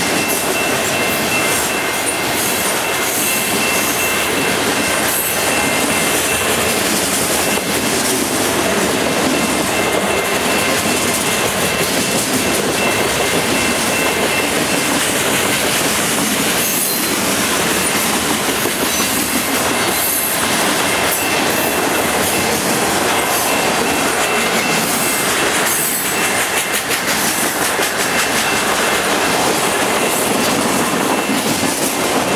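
Freight cars of a mixed train (grain hoppers and tank cars) rolling past at track speed: a loud, steady clatter and rumble of steel wheels on the rails, with a thin high steady tone running through much of it and a few sharper knocks.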